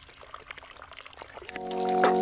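Water trickling and splashing from a pump-fed hand shower head into a basin, faint and irregular with small drips. About one and a half seconds in, background music swells in and becomes the loudest sound.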